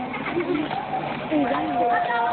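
People's voices with wavering pitch, and a steady held tone that starts about one and a half seconds in and carries on.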